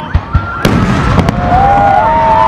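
Fireworks going off: two low thumps, then a sharp bang about two-thirds of a second in and a couple more cracks. Several overlapping high, steady whistles join in from about a second and a half in.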